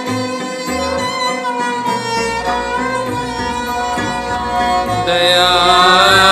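Gurmat Sangeet in Raag Gauri Cheti: bowed Sikh string instruments, a taus among them, playing a slow gliding melody over a low drone, with a voice singing along. The music swells louder near the end.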